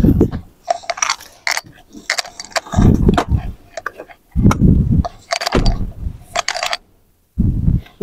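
A series of clicks and dull knocks from a van's leather captain seat being adjusted, its seatback pushed back up to the normal upright position, with rustling as the person sitting in it moves.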